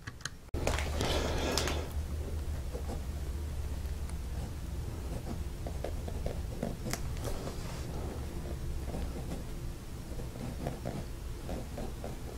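Knox Galileo fountain pen's oblique double broad nib writing on paper: faint, short scratching strokes as letters are formed. A brief rustle of handling comes about a second in.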